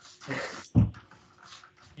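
A short breathy sound, then a dull thump a little under a second in as a person's hands and knees land on a carpeted floor.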